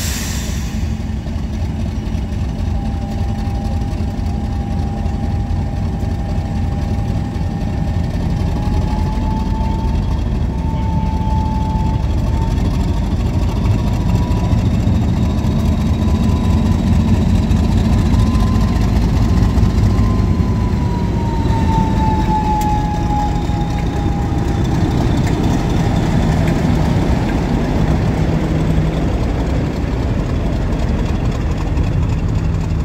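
Heritage diesel locomotive's engine running with a heavy low rumble. A whine rises in steps over about ten seconds, holds, then falls back as the engine note eases.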